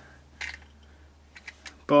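A few faint, light clicks, the clearest about half a second in, over a steady low hum.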